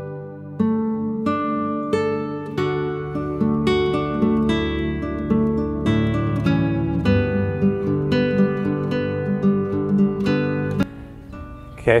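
Background music: an acoustic guitar picking a gentle melody of plucked notes, dropping away near the end.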